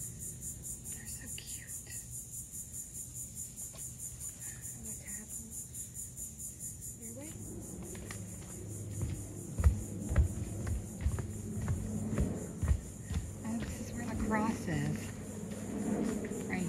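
A steady high-pitched drone of insects with a fast, even pulse, about four or five beats a second. From about halfway on, irregular footsteps on a wooden footbridge and trail come in over it, with a few heavier thumps.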